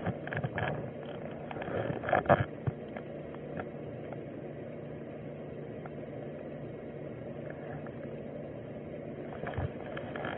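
Body-worn camera microphone picking up a few rustles and knocks of clothing and gear in the first two and a half seconds, then a steady low hum. There is a dull thump just before the end.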